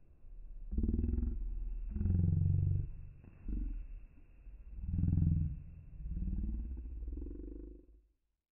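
A low, growl-like sound with a fast pulsing grain, coming in five swells whose pitch slides down and then back up.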